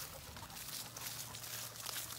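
Faint rustling and crunching of footsteps and paws moving through grass and dry fallen leaves, a soft hiss scattered with small ticks.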